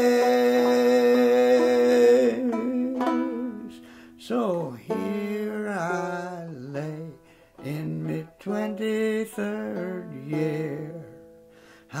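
Banjo with a man's singing: a long held sung note over the banjo, a quieter stretch of a few picked notes about two seconds in, then sung phrases that slide in pitch with short gaps, over the banjo.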